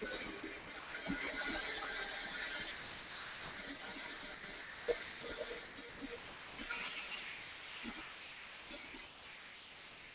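Horizontal metal-cutting band saw blade cutting through steel tubing at a 45-degree miter, a steady hiss with a few short ticks, the sharpest about five seconds in. The sound eases a little toward the end.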